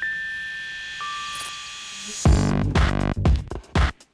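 Electronic closing theme music of a TV programme: a few held, chime-like synthesizer tones, then a loud, heavily beating electronic track cuts in a little after two seconds.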